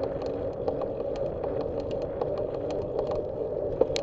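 Bicycle riding on asphalt, heard from a camera mounted on the bike: a steady tyre-and-road hum with frequent small clicks and rattles, and a sharper knock near the end.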